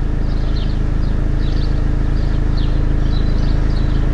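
Mercedes-Benz Vito 115 CDI four-cylinder common-rail diesel engine idling steadily.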